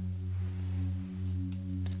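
Steady low background drone: a hum-like tone with a few higher overtones that swells and eases gently, with a faint click near the end.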